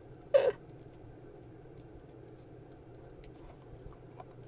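A brief vocal sound, a short "uh" or hum, about half a second in. Then quiet room tone with a few faint small clicks and taps as papers and craft supplies are handled on the work table.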